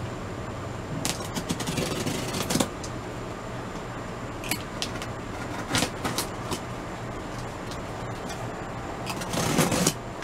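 A cardboard shipping box being handled and opened: irregular scrapes, taps and rustles of cardboard and packing tape, with a longer, louder scrape near the end, over a steady low hum.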